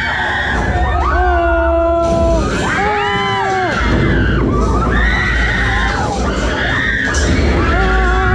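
Several riders screaming on a drop-tower elevator ride, long held screams about a second each, one after another and overlapping, over a steady low rumble from the ride.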